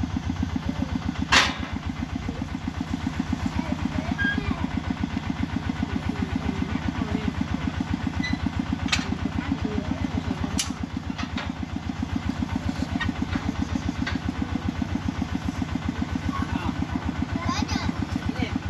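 Small stationary engine on a water-well drilling rig running steadily with an even, rapid thumping beat. A few sharp knocks cut through it, the loudest a little over a second in.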